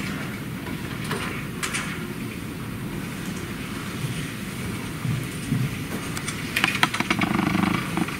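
Low, steady rumble of room noise during a pause in speech, with a short run of clicks and rustling about seven seconds in.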